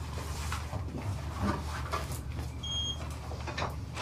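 Steady low hum of interrogation room tone with scattered knocks and rustling as people move about, possibly handling a door. A short high electronic beep sounds about two and a half seconds in.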